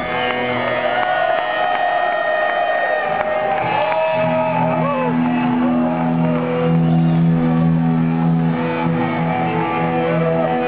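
Live thrash metal band's electric guitars, loud through the amps, holding low droning notes with repeated bending, sliding pitches above them. A deep held note comes in about four seconds in. Crowd shouts are heard under the guitars.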